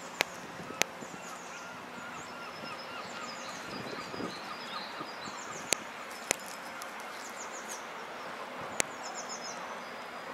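Birds chirping and singing in short, repeated, high falling notes over steady background noise, with a few sharp clicks scattered through.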